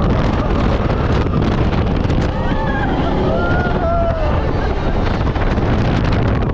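Wind rushing over the microphone of an open ride vehicle travelling fast along its track, with a steady low rumble. Riders yell a few times in the middle.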